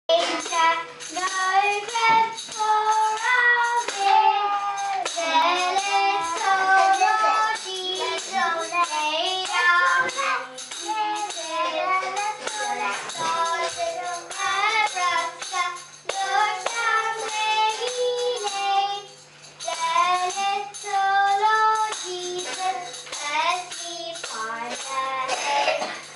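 A young girl singing a song, with a small tambourine shaken along as she sings.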